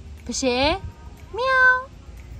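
Tabby cat meowing: a short call that rises and then holds, about a second and a half in.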